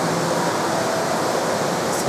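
Steady rushing background noise filling a large indoor atrium, with faint distant voices.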